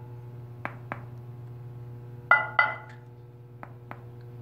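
Hand knocks on a ceramic wall tile, in pairs: two faint taps about a second in, two louder taps that ring briefly a little past two seconds, and two faint taps near the end. The tile is stuck to the concrete wall only by a few dabs of cement mortar, with a gap behind it, and the knocks demonstrate that unbacked sound.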